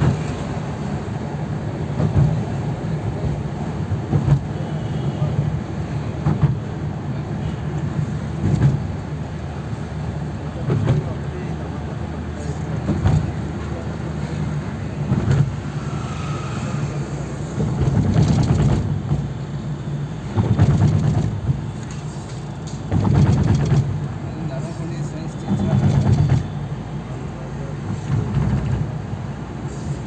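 Steady engine and road noise of a moving car heard from inside the cabin, with several louder swells lasting about a second each in the second half.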